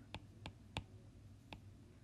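Faint clicks of a stylus tip tapping on a tablet's glass screen during handwriting: about four light taps, unevenly spaced.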